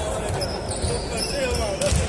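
A volleyball bounced on the sports-hall floor: a few dull thuds, under voices in the hall.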